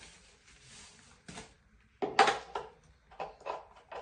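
Faint handling sounds of assembling a small wooden stool: light clicks and knocks of wooden parts and hardware, a few in quick succession near the end. A woman's short "oh!" comes about halfway through and is the loudest sound.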